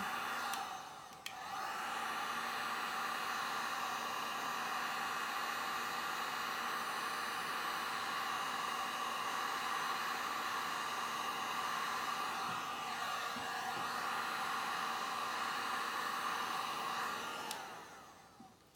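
Handheld heat gun running with a steady whir, blowing hot air over freshly poured epoxy resin to spread the white resin into lacing. It dips briefly about a second in and cuts out near the end.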